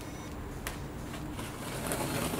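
Box cutter blade slicing through packing tape on a cardboard box: a single sharp click, then a scratchy slicing and tearing noise building near the end.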